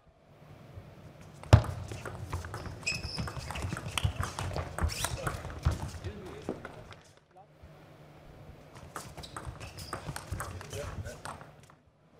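Table tennis ball clicking rapidly off rackets and table in a rally, with one sharp, loud hit about one and a half seconds in. After a short lull, another run of clicks follows in the last few seconds.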